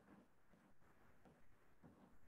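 Near silence: low room tone over an online-class audio line, with faint, indistinct voice-like murmuring in the background.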